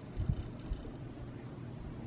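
Low, steady background hum with a few soft, dull thumps, a cluster about a quarter second in and one more shortly after.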